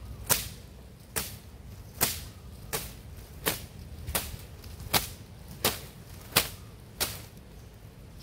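A series of about ten sharp snaps, evenly spaced a little under a second apart, as dry coconut palm fronds are broken by hand.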